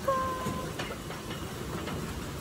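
Close rustling and knocking of a phone being handled while a kid goat presses against it, with one short, faint, steady tone just after the start.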